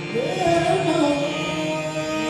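Qawwali: a male voice enters just after the start with a gliding, ornamented sung phrase over the steady drone of harmonium chords.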